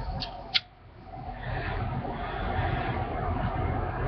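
A man smoking a tobacco pipe: two short clicks near the start, then a long, steady, breathy exhale as he blows out the smoke.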